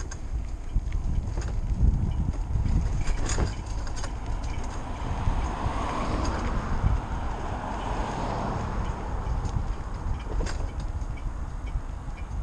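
Riding noise from an electric bike on a road: wind rumbling on the microphone and tyre noise, with scattered small clicks and rattles. A hiss of road noise swells about halfway through and fades a few seconds later.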